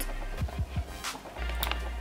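Background music with a deep bass line and a steady beat of low drum hits and sharp high percussion.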